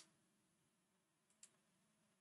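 Near silence, with a single faint computer mouse click about one and a half seconds in.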